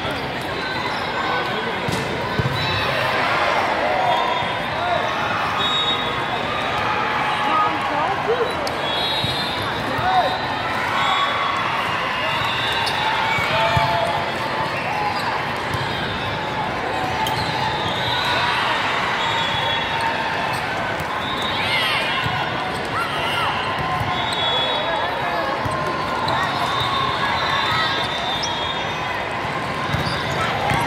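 Volleyball hall din: many voices of players and spectators calling out and talking at once, with ball hits and thuds on the court, echoing in a large hall. Short high squeaks, typical of shoes on the court, come through at intervals.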